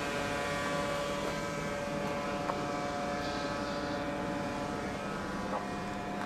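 A motor running steadily: an even drone of several held tones over a hiss, with no rise or fall.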